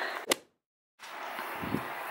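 A single sharp click, followed by half a second of dead silence. Then a faint steady background hiss resumes, with a short low thump near the end.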